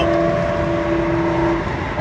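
Car travelling at highway speed, heard from inside the cabin: steady road and engine noise with a steady hum that stops about a second and a half in.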